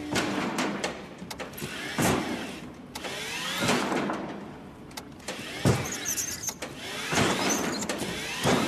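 Small electric utility cart's motor whining up over and over as it lurches back and forth, with several thumps as it bumps against the tunnel walls.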